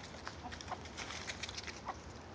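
Backyard hens clucking softly as they forage, a few short, separate clucks.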